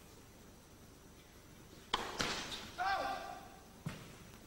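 A tennis ball struck hard with a racket about two seconds in, followed quickly by a second ball impact, then a line judge's single drawn-out shouted call, and a short ball bounce near the end, all in a large indoor arena.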